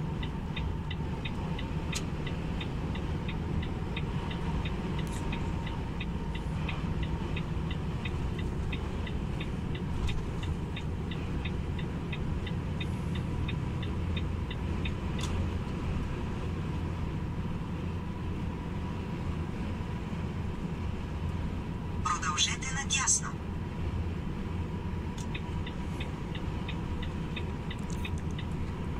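Steady drone of a Renault Magnum truck's diesel engine and road noise, heard from inside the cab while cruising on the motorway, with a faint thin whine held at one pitch. A fast, evenly spaced ticking runs through the first half, and a short higher-pitched burst comes near the end.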